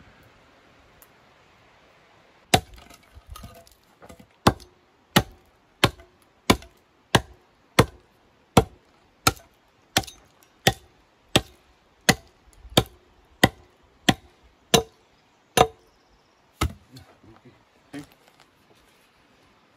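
Axe chopping into the end of a weathered wooden beam. About twenty sharp blows come at a steady pace of roughly three every two seconds, starting a couple of seconds in.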